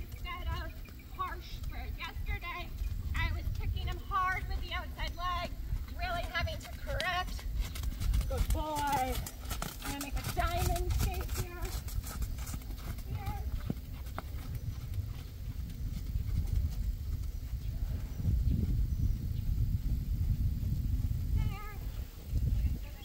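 Ridden horse's hoofbeats on a sand arena, with a run of sharper strikes as it passes close from about eight to twelve seconds in; voices talk over the first half.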